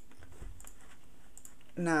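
Faint scattered clicks from computer use at the desk over a steady low background hiss. A short spoken word begins near the end.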